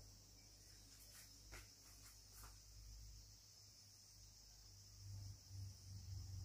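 Near silence: faint room tone with a low hum and a high hiss, broken by a few faint clicks in the first half.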